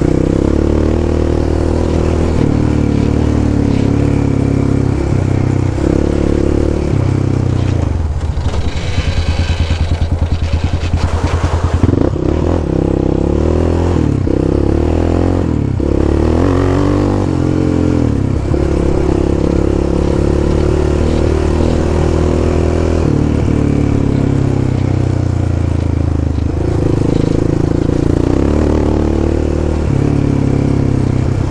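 Yamaha Raptor 700 ATV's single-cylinder four-stroke engine running at trail speed. About eight seconds in it drops off-throttle to a slow, pulsing low engine speed for a few seconds. It then picks up again and carries on steadily.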